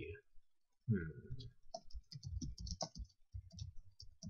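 Typing on a computer keyboard: a quick run of keystrokes that starts about a second and a half in and goes on nearly to the end.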